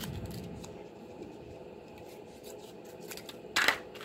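Scissors snipping through patterned scrapbook paper glued over a row of wooden clothespins, with quiet cutting and handling sounds and one sharp clack about three and a half seconds in.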